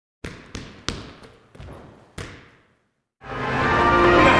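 A basketball bouncing on a hard floor, about six echoing bounces at uneven spacing over the first two seconds or so. Music fades in about three seconds in.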